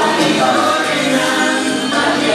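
Music with a group of voices singing together, choir-like, going steadily with no break.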